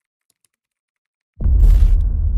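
Silence, then about one and a half seconds in a logo sound effect hits suddenly and loudly: a deep boom with a short hiss on top that runs on as a low rumble.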